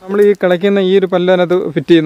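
A man speaking close to the microphone, with only brief pauses; no other sound stands out.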